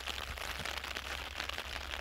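Steady rain falling on a hand-held umbrella close above the microphone, an even patter of drops.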